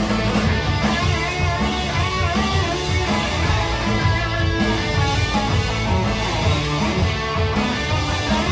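Rock band playing live: electric guitars over bass and drums in a passage with no singing.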